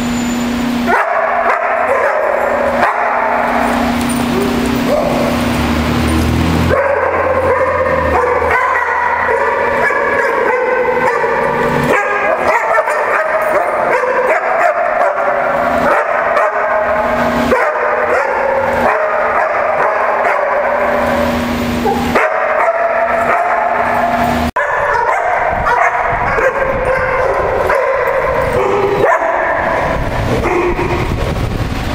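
Many dogs barking and yipping over one another, continuously, as a pack plays together.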